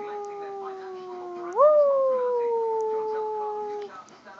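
Rottweiler howling: one long howl that holds a steady pitch, sagging slightly. About one and a half seconds in it jumps up in pitch and then slowly falls again, breaking off just before the end.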